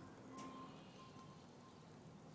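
Near silence: a faint background with a few faint steady tones and one light click about half a second in.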